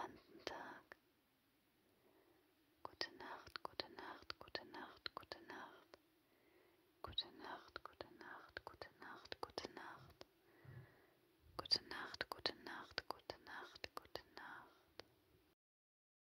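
A woman whispering close to the microphone in three stretches, with many sharp clicks in her whisper, over a faint steady hum. She stops shortly before the end.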